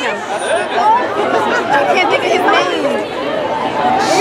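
Several people talking over one another: a crowd's chatter, with overlapping voices and no other sound standing out.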